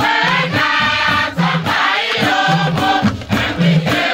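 Large youth choir singing together to a steady beat of hand drums.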